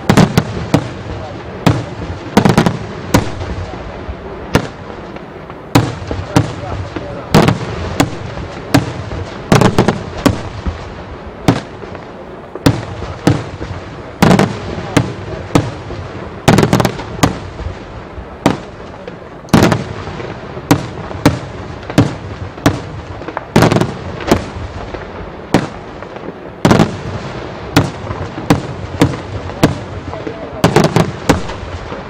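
Daytime fireworks display: aerial shells bursting in a rapid, irregular barrage of loud sharp bangs, about one or two a second, with no let-up.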